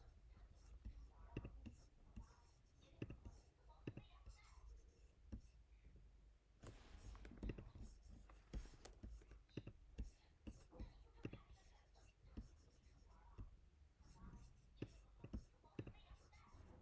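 Near silence: quiet room tone with faint, irregular clicks and rustles from computer mouse and keyboard use.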